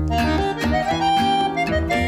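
Instrumental background music: a held melody line over lower chords and a bass line.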